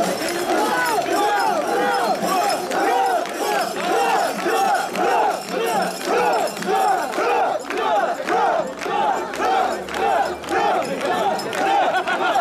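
A crowd of mikoshi bearers chanting in unison as they carry the portable shrine. The chant is a short rising-and-falling shout repeated steadily about twice a second, the bearers' rhythmic call that keeps them together under the load.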